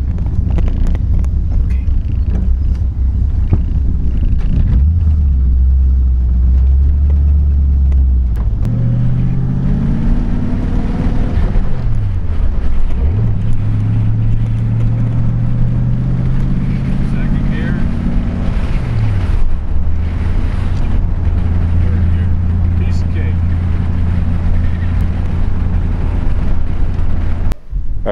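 1966 Ford 289 V8 with dual Smitty mufflers, heard from inside the cabin of a 1932 Ford coupe under way. The engine note climbs under acceleration, drops sharply twice, then settles into a steady run for the last several seconds before cutting off just before the end.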